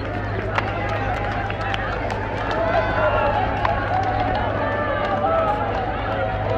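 Crowd of many people talking at once, a dense babble of overlapping voices with no single clear speaker, over a steady low hum, with a few sharp clicks.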